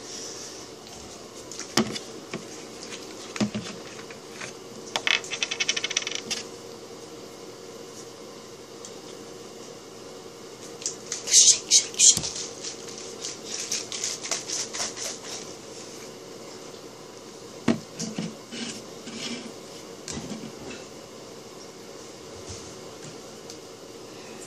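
Small objects handled on a table: scattered clicks and clinks, a quick rattle about five seconds in, then a bottle shaken in a few fast, loud strokes near the middle, followed by more rustling and clinks.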